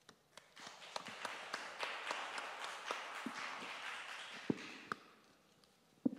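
Small audience applauding briefly, the clapping fading out about five seconds in.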